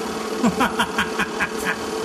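A person laughing in a quick run of about eight short bursts, over a steady low hum.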